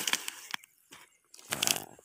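Wild giant honeybee (Apis dorsata) comb being torn apart by hand: a noisy tearing sound, loudest at the start and fading within about half a second, with a second short burst near the end.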